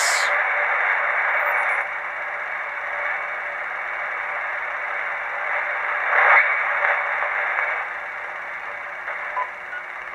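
uBitx HF transceiver's receiver in LSB, putting out a steady hiss of band noise and static through its speaker as it is tuned down from about 3 MHz to 2.5 MHz. The noise grows gradually fainter as the tuning moves down toward the cutoff of the newly fitted broadcast-band high-pass filter, with a brief louder rush a little past the middle.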